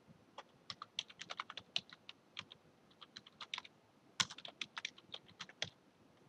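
Typing on a computer keyboard: a run of quick, uneven keystrokes with brief pauses, entering a command line.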